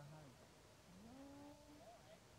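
Two faint drawn-out vocal sounds: the first falls in pitch and ends just after the start, the second rises and then holds for about a second.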